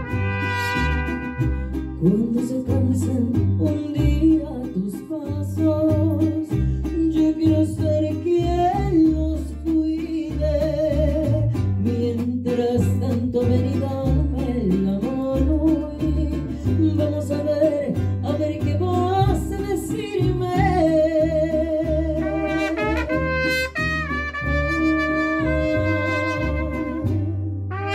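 A mariachi band playing live: a woman sings into a microphone over a steady bass rhythm, with the trumpets playing at the start and coming back in near the end.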